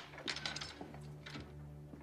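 Several light clicks and knocks of footsteps and a wooden door's metal latch being worked as the door is opened, over a low steady hum.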